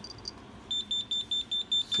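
Alert buzzer on a homemade APRS receiver beeping fast and high, about seven beeps a second, starting just under a second in after one short beep at the start. It signals that an emergency flash-flood alert message has come in over APRS.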